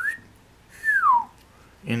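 A man whistling: a short rising note, then about a second later a longer falling glide.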